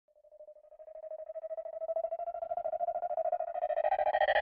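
Electronic music intro: a single rapidly pulsing synth tone that fades in from silence and grows steadily louder and brighter as overtones join it, building up like a riser.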